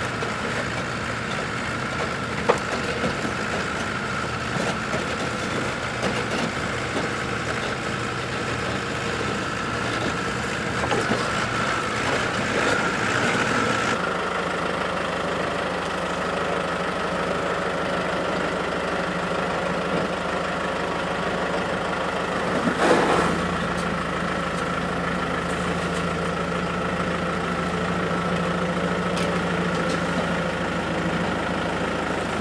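Off-road 4x4 engines running at low, crawling revs over rocks: first a Jeep Wrangler, then, after a change about halfway, a Land Rover Defender. A brief scraping thump about two-thirds of the way through is the loudest moment.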